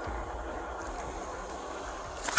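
Steady low rumble of an idling vehicle engine, with no distinct events.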